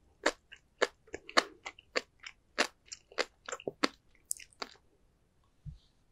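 Close-mic chewing of a mouthful of sea grapes and flying fish roe, the little beads popping in sharp, crisp clicks several times a second. The popping stops about five seconds in, and a soft low thump follows shortly after.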